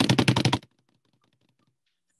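Ticking of an online name-picker wheel spinning: rapid clicks, loud for about the first half second, then faint and spacing further apart until they stop near the end.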